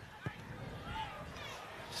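Quiet outdoor rugby-ground ambience with faint, distant voices and one short, low thump about a quarter of a second in.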